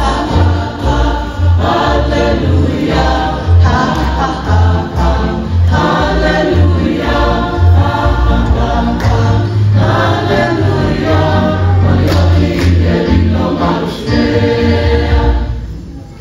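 A large church choir of women and children singing a hymn over a steady low beat of about two pulses a second. The singing ends shortly before the close.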